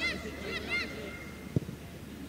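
A bird calling: two quick bursts of short, high calls in the first second. A single sharp thump about one and a half seconds in.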